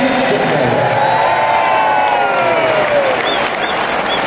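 Football stadium crowd cheering and shouting, with a long drawn-out call from many voices falling in pitch from about a second in, and a few short high-pitched calls near the end.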